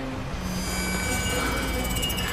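Sustained high metallic ringing over a low droning rumble, swelling in about half a second in and holding steady: a dramatic sound effect in an animated fight scene.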